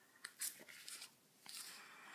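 Faint crinkles and a few soft clicks as a duct tape wallet is unfolded in the hands.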